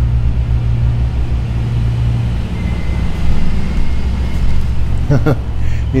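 An engine running steadily, a loud low rumble with a fast even pulse. A faint high whine comes in briefly in the middle.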